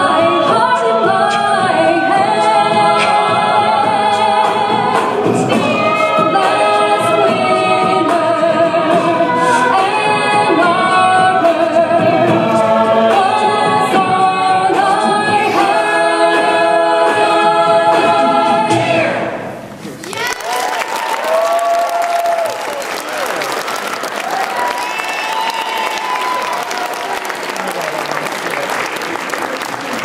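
Mixed-voice a cappella group singing with a female lead, the song stopping sharply about two-thirds of the way through. Then an audience applauding, with a few shouts over the clapping.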